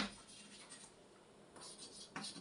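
Chalk writing on a blackboard: a sharp tap of the chalk right at the start, then faint scratchy strokes that pick up again near the end.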